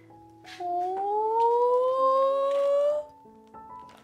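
A woman's long, rising, tearful wail, about two and a half seconds long, over soft background music.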